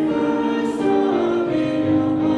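A hymn: voices singing over sustained keyboard chords, the notes moving in steps every half second or so.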